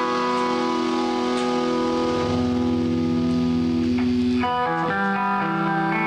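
Live post-rock band with electric guitar and electric bass letting notes ring in a slow, sustained passage. The chord changes about four and a half seconds in, and again shortly after.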